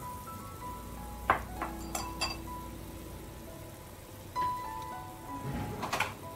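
Soft background music with a cluster of sharp clinks from a utensil against the soup pot, between about one and two and a half seconds in, as starch slurry is stirred into the simmering soup.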